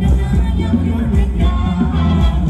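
Loud Thai ramwong dance music from a live band, with a heavy steady bass and a singing voice.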